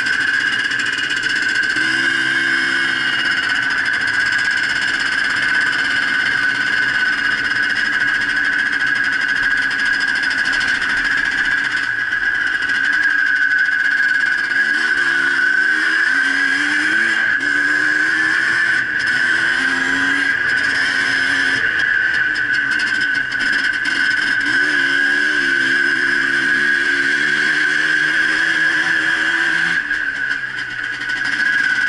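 Yamaha DT 180 single-cylinder two-stroke trail bike engine running under way, its pitch rising and falling repeatedly as the throttle opens and closes, over a steady high-pitched tone.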